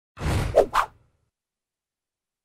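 Whoosh sound effect of an animated logo intro: a swell of rushing noise under a second long, ending in two quick swishes.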